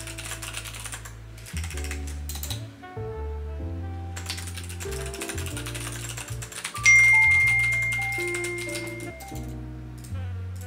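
Typing on a split computer keyboard, quick runs of key clicks, over background music with a steady bass line. About seven seconds in a single bright chime rings out, the loudest sound, fading away over a couple of seconds.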